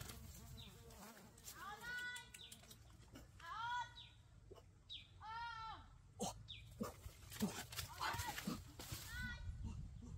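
A boy calling out with a hand cupped to his mouth: several short, high-pitched, wavering calls that rise and fall, with sharp clicks and cracks in the second half.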